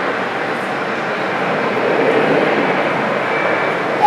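Jet engines of a taxiing Czech Airlines airliner: a steady running noise with a faint high whine, growing slightly louder about halfway through.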